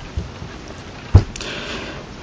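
Faint background hiss, broken about a second in by a single short low thump, followed by a brief higher hiss.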